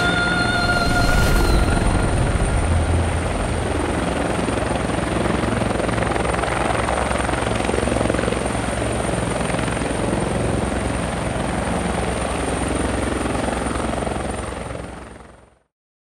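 Eurocopter EC130 (Airbus H130) helicopter running, a steady rotor chop under a thin high whine; the sound fades out near the end.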